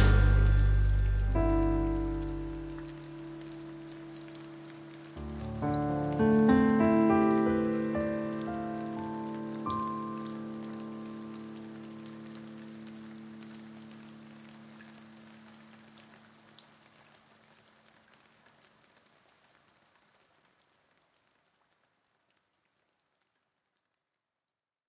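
Closing notes of a song: a few last notes and chords enter one after another, ring on and fade slowly away to nothing.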